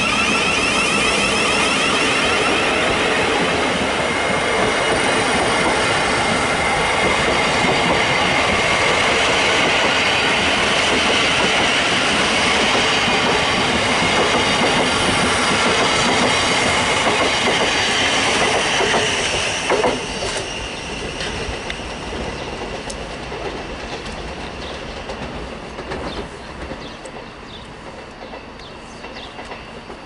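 Southeastern class 707 City Beam electric train running past close by: a steady loud rumble and wheel clatter with a high, wavering whine. About two-thirds of the way through there is a click, after which the sound drops sharply and fades to a quieter rumble.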